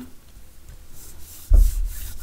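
Hands rubbing designer paper flat onto a card base, a soft rub of palms on paper, with a louder dull thump and rub about one and a half seconds in.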